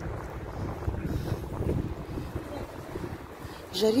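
Wind buffeting a phone's microphone: a steady, uneven low rumble. A short spoken word comes in right at the end.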